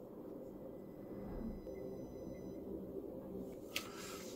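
Faint steady low hum of bench test equipment running. A few faint thin high whines come in briefly about halfway through.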